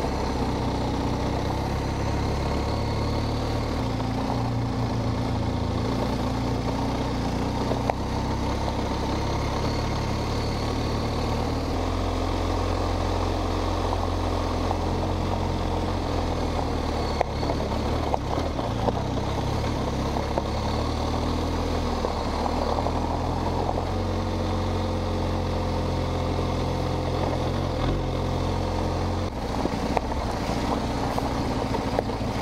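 Motorcycle engine running at a steady low speed on a gravel road. The engine note shifts about twelve and twenty-four seconds in, with a few small knocks from the ride.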